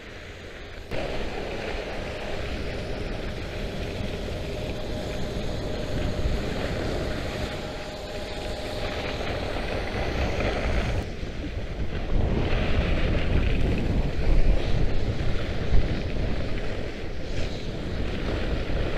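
Wind buffeting the microphone over the hiss of skis sliding on hard, icy snow during a downhill run. The rush jumps up about a second in, drops briefly about two-thirds through, then comes back louder with a few sharp peaks near the end.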